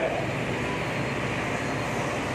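Steady, even background hum and hiss, unchanging and with no distinct events.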